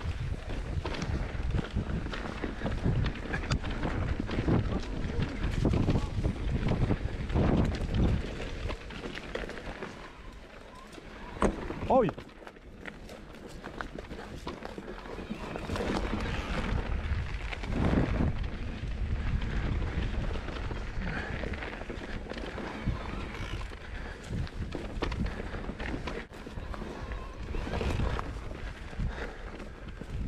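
Mountain bike descending a dirt forest trail: wind buffeting the camera microphone, with tyre noise and the bike's frame and parts rattling and knocking over bumps. It goes quieter for a few seconds near the middle, then picks up again.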